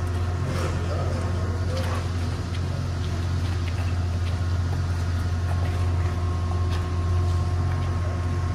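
A hearse's engine idling: a steady low hum that does not change.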